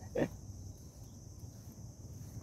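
A brief vocal sound from the man right at the start, then faint outdoor background: a steady high-pitched hum and a low rumble.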